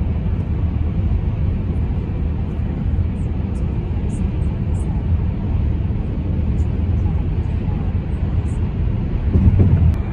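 Steady low road and engine rumble heard inside a car's cabin moving along a freeway, swelling briefly louder near the end.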